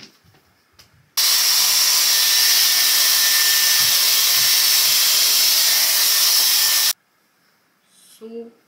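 Hot-air styler with a round brush attachment blowing air through hair: a loud steady rush of air with a faint high whine. It is switched on about a second in and cuts off sharply near the end.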